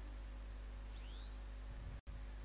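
Faint steady electrical hum from the church's microphone and sound system. About a second in, a thin high tone joins it, gliding upward and then holding steady.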